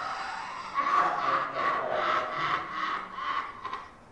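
A man laughing: a breathy, wheezy laugh in a run of short bursts, about three a second, fading near the end.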